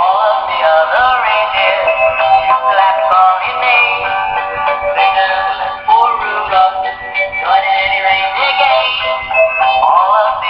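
A walking Christmas penguin toy playing a sung Christmas song through its small speaker. The sound is thin and tinny, with no bass.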